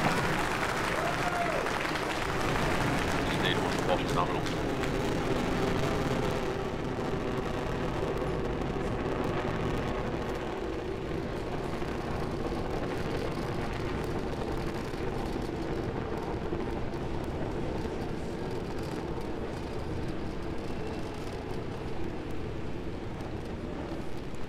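Noise of a Falcon 9 rocket's first stage, nine Merlin engines, climbing after liftoff. It is a steady rushing noise that eases a little after about six seconds. Voices and what may be cheering run underneath.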